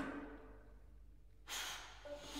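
Sparse contemporary chamber music for flute, clarinet, violin, viola, cello and piano. The ring of earlier notes fades, then about one and a half seconds in comes a breathy, airy sound with faint held pitches in it.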